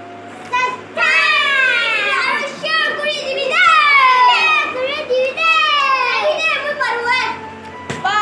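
Several young children calling out together in loud, high-pitched, sing-song voices, with laughter. The calling starts about half a second in and dies down shortly before the end.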